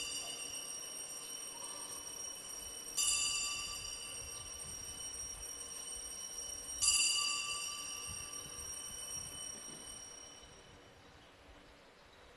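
Altar bell rung at the elevation of the chalice after the consecration: the ring of a first strike fades at the start, then two more strikes about three and seven seconds in, each a bright, high, several-toned ring that dies away over a few seconds.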